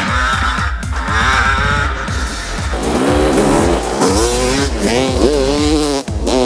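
Electronic dance music with a steady beat, joined from about halfway in by a dirt bike engine revving up and down.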